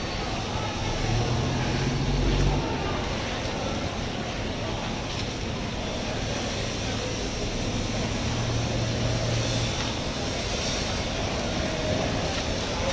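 Steady rumbling background noise with a low hum that swells about a second in and again from about six to nine and a half seconds in.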